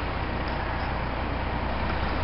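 Steady low hum with an even hiss over it, typical of a car engine idling, heard from inside the vehicle.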